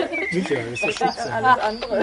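Indistinct conversation: voices talking over one another.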